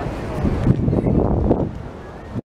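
Wind buffeting the camera microphone in gusts, loudest from about half a second in until near the end.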